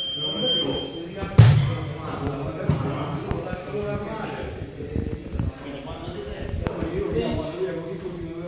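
Two grapplers hitting the training mat as a single-leg takedown finishes: one heavy thud about a second and a half in, followed by a few lighter knocks and shuffles on the mat.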